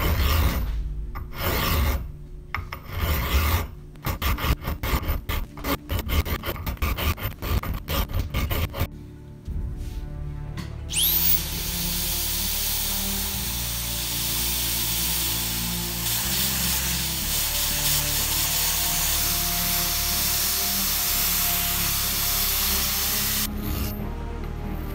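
Steel hand file rasping over a fluted steel pipe in quick, irregular strokes for about nine seconds. About eleven seconds in, a narrow-belt power file spins up with a rising whine. It then runs steadily, sanding the twisted steel, and stops shortly before the end.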